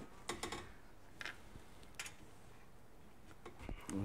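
A few light metallic clicks and taps from handling a galvanized steel garage door track section and a ratchet and socket: a quick cluster about half a second in, then single ticks spread out after.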